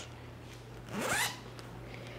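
Zipper on a full-body shapewear garment (faja) pulled once: one short rising zip about a second in.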